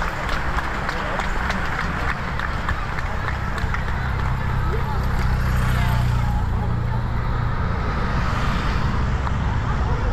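A pack of road racing bicycles rushing past with tyre hiss and a haze of clicking, with spectators' voices throughout. From about halfway, race convoy cars and motorbikes drive past, bringing a low engine hum and road noise that swells twice as they go by.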